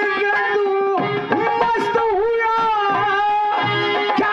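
Harmonium playing held notes over dholak and nagara drum strokes: the live instrumental accompaniment of a Haryanvi ragni.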